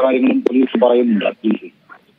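A man's voice reporting over a telephone line, with the thin, narrow sound of a phone call. The speech trails off about a second and a half in.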